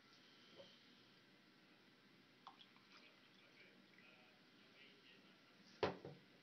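Near silence: room tone with a few faint ticks and rustles, then a single sharp knock near the end.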